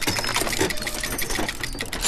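Typing sound effect: a rapid, continuous run of keystroke clicks.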